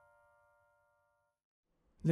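The last chord of a Yamaha digital piano dying away to near silence, then cut off sharply about one and a half seconds in.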